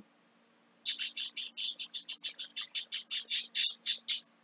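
A bird chirping in a quick, even series of short high calls, about eight a second, starting about a second in.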